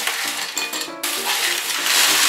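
Crisp, oven-dried homemade corn flakes poured from a baking tray into a glass jar, rattling and clinking against the glass.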